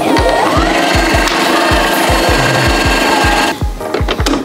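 Computerized sewing machine motor spinning up with a rising whine, running steadily, and stopping about three and a half seconds in.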